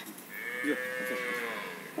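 A cow mooing: one long call of about a second and a half, its pitch rising slightly and then falling away.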